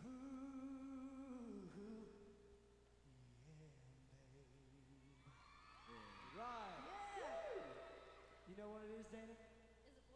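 Male vocal group singing a cappella in harmony, with held notes and a few arching, sliding vocal runs partway through.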